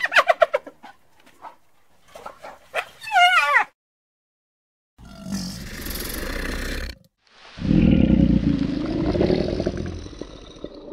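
Spotted hyena calling: quick, pitched, wavering cries, the last one rising and falling. After a short pause, crocodiles growling in two long, low, rough stretches, the second louder.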